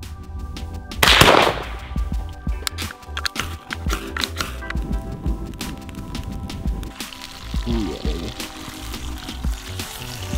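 Background music with a steady beat, and about a second in a single rifle shot, the loudest sound, fading quickly.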